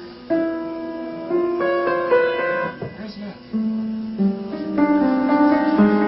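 Upright piano being played: single notes and chords struck one after another, with a brief pause about halfway, then fuller, louder chords near the end.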